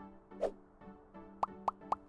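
Cartoon plop sound effects over faint background music: one rising bloop about half a second in, then three quick plops near the end, as a dripping-paint transition effect.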